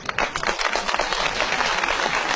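Audience applauding: many hands clapping in a dense, even patter that starts as soon as the speech breaks off.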